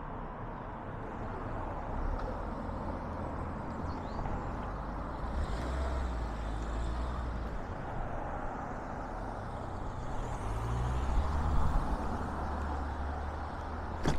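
Road traffic going past on a street: a steady rumble of tyres and engines that swells as vehicles pass, about five seconds in and again around eleven seconds in.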